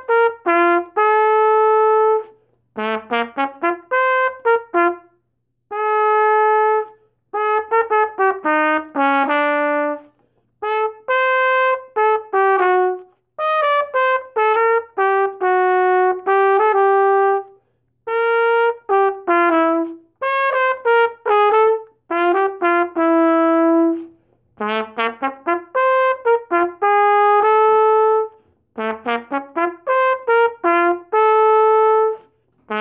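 A Conn 16B trumpet being play-tested. It plays phrases of quick rising runs and held notes, with short breaks between phrases.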